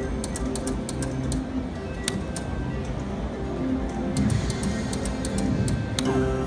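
Video slot machine playing its electronic game music, with a scatter of quick ticking clicks as the reels spin and stop.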